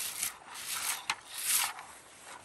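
Plastic lingonberry picker (berry rake) combing through low lingonberry shrubs: about four quick rasping, rustling strokes, with a sharp click just after a second in.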